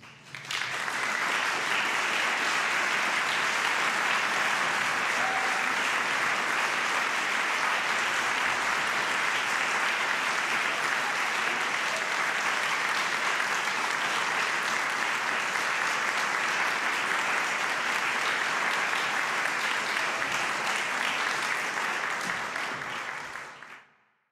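Audience applauding: the clapping breaks out about half a second in, holds steady and even, and dies away just before the end.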